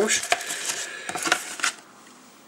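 Cardboard chocolate box and foil-wrapped bar being handled: a few sharp crinkles and taps of card and foil, the last about a second and a half in.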